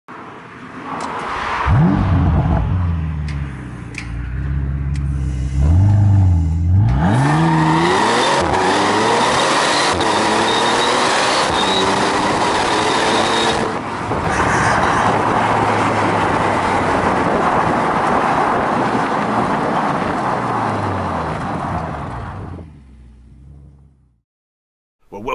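Bentley Continental GT's 6.0-litre W12 engine revving hard as the car accelerates through the gears, its pitch climbing and dropping back at several gear changes. It then settles into a steady, loud run with road and wind noise, which fades out near the end.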